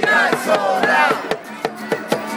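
Protest crowd chanting and shouting over a steady beat of about four strikes a second.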